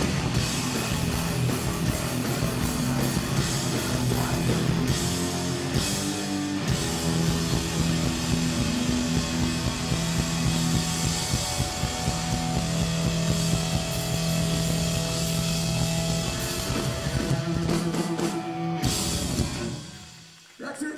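Hardcore punk band playing live: distorted electric guitars, bass and drum kit playing loudly without a break, then the music cuts off suddenly near the end.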